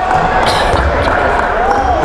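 Gymnasium background noise during a stoppage in play after a foul: indistinct voices of players and spectators, with a faint raised voice near the end.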